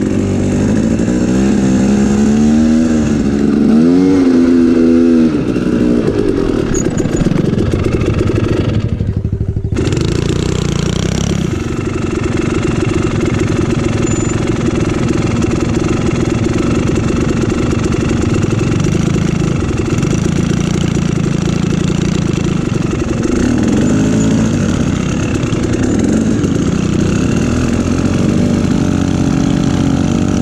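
Dirt bike engine being ridden, revving up and down in pitch for the first few seconds, then holding a steadier note with a few short rises later on.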